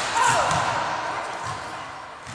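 Basketballs bouncing on a hardwood gym floor, a few dull thuds ringing out in a large echoing hall, with children's voices over them.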